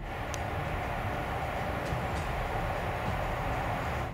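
Steady outdoor background noise, a low rumble with a hiss over it, with a few faint ticks.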